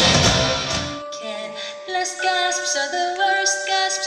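Live rock band playing, cutting off about a second in, leaving a held keyboard note under a singing voice with vibrato.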